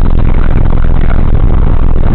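Car cabin noise at about 95 mph on a motorway: a loud, steady roar of tyres and wind that overloads the dashcam's microphone.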